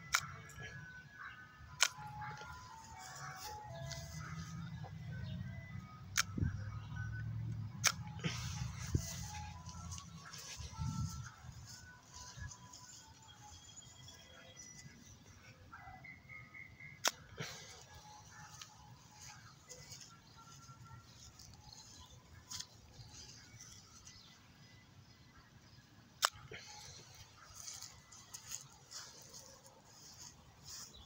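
An ice cream truck's chime melody playing faintly, note by note, fading out about halfway through, with a low rumble under it in the first third. A few sharp clicks, spaced seconds apart, from the plastic toy golf club tapping the ball.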